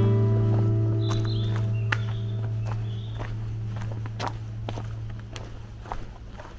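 One strummed acoustic guitar chord ringing and slowly fading, with footsteps on a dirt forest trail over it, roughly one step a second.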